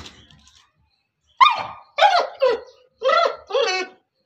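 Pit bull giving about five short, high yelping barks in quick succession, starting about a second and a half in, as it noses after a rat hidden behind a wall.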